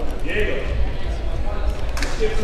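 Basketball game in a gym: players' footsteps running on the hardwood court, with crowd voices and chatter, all echoing in the hall.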